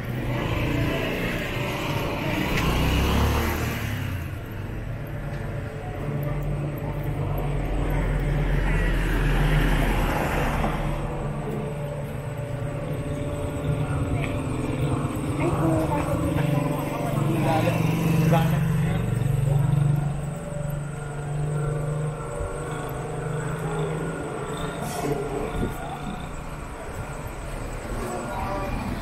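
Street traffic: motorcycle-sidecar tricycles, motorcycles and cars running past with a steady engine hum that swells as they pass, with people talking nearby.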